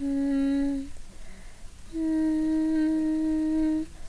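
A person humming a slow melody in long held notes: a short lower note at the start, a pause, then a higher note held for about two seconds.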